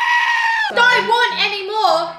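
A sheep's long, loud yell held on one steady pitch, cut off less than a second in, then voices talking.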